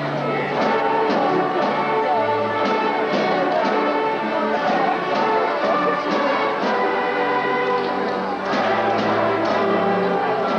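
Children's school orchestra of violins, cellos and woodwinds playing a piece with a steady beat.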